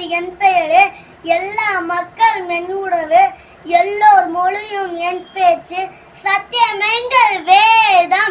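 A young boy singing a rhyme in short phrases with brief pauses between them.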